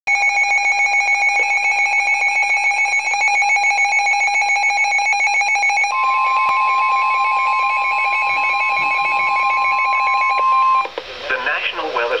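Weather radios sounding a severe thunderstorm warning alert: rapid two-tone alarm beeping, joined about six seconds in by the steady 1050 Hz NOAA Weather Radio warning alarm tone, which cuts off near eleven seconds as the broadcast voice of the warning message begins.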